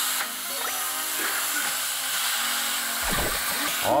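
Pork belly chunks sizzling steadily in hot fat in a thick stainless steel pot, under light background music.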